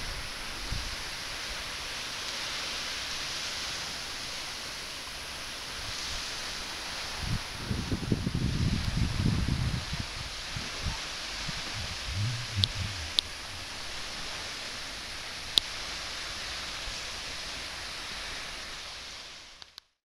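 Steady hiss of the sea washing on the shore. Low rumbling bursts come in the middle, and a few sharp clicks follow. The sound fades out just before the end.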